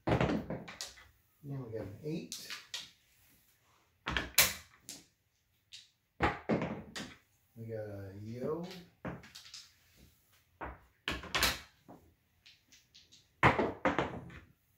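Sharp separate clacks of dice and clay chips on a felt home craps table: dice thrown against the studded rubber back wall and chips being set down, about five distinct knocks over the stretch.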